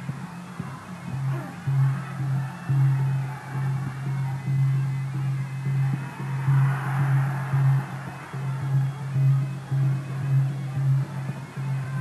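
Traditional ring music accompanying a Kun Khmer bout, led by a drum beating in steady repeated pulses.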